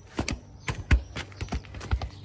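A series of short, irregular knocks and taps, about seven in two seconds.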